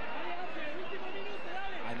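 A man's voice, a TV football commentator, over the steady background noise of a stadium crowd.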